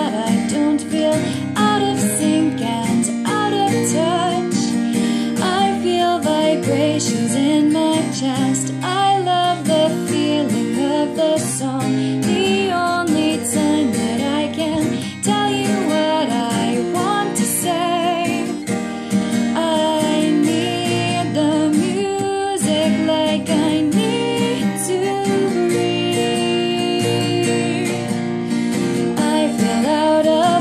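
A woman singing a slow pop ballad over acoustic guitar, her held notes wavering in vibrato.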